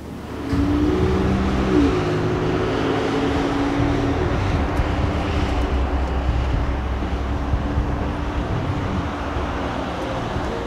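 Ford SUV driving on a paved road, a steady engine and road rumble that starts about half a second in, with the engine pitch shifting once a couple of seconds in.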